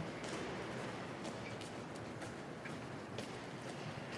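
Faint, hushed ambience of a large stone hall: a steady low hiss with a few scattered soft clicks.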